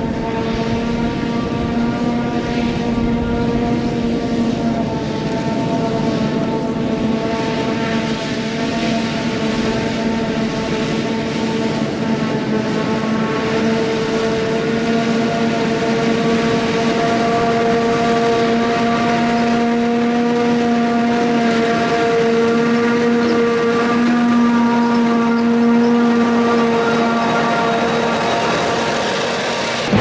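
Claas Jaguar 970 self-propelled forage harvester chopping grass: a steady, siren-like whine over engine noise, with a tractor running alongside.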